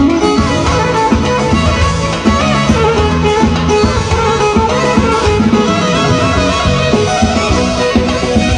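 Live band music: a violin plays the melody over Korg arranger keyboards, with a steady rhythm and bass.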